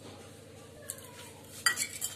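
Steel kitchenware clinking: a small click just under a second in, then a sharp metallic clatter at about a second and a half with a few lighter clinks after it, over a faint steady background hum.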